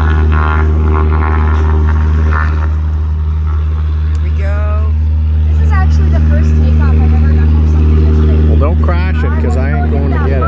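Floatplane's piston engine and propeller running as a steady, even drone while the plane runs across the water on its floats, with no rise or fall in pitch.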